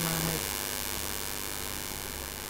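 Steady low mains hum under a constant hiss, the electrical background noise of the recording.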